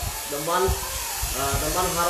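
Speech: a lecturer talking, over a steady background hiss.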